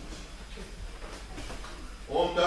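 Faint room noise of a training hall: an even hiss over a steady low hum, with no distinct knocks or calls.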